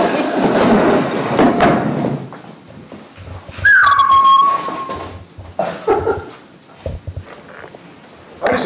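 Audience laughter dies away over the first two seconds. About three and a half seconds in there is a single loud, high squeal that slides down in pitch and holds for about a second.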